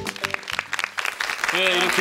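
Studio audience applauding, with background music ending at the start and speech beginning near the end.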